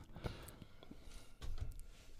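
Quiet room tone with a few faint soft clicks and a brief low murmur about a second and a half in.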